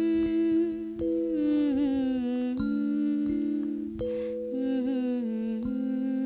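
Harmonica played slowly: long held chords that change every second or so, with a few wavering, bent notes.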